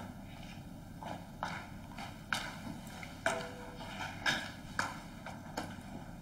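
Footsteps of a person walking, a short sharp step every half second to a second.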